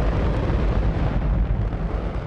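Space Shuttle main engine firing on a test stand: a steady, loud roar with a deep rumble.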